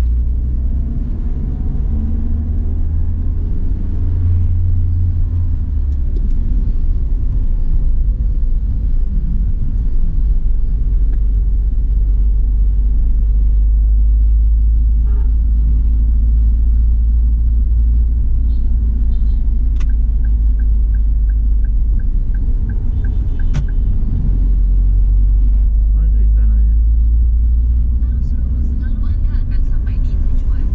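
A car driving, heard from inside the cabin as a steady, loud low rumble of engine and road noise. About two-thirds of the way through there is a short run of faint even ticks, and a couple of sharp clicks.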